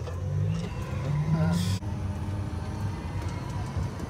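Tour tram's engine running as the tram moves on, its low tone rising over the first couple of seconds, with a short hiss a little under two seconds in.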